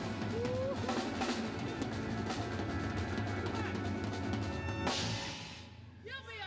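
Live soul band playing with the drum kit to the fore. The music stops about five seconds in on a last hit that rings out briefly.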